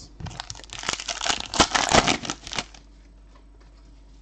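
A trading-card pack wrapper being torn open and crinkled in the hands, a dense crackling that stops about two and a half seconds in.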